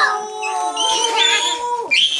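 Several children's voices in a long, drawn-out excited "ooooh" at once, overlapping at different pitches, which breaks off near the end.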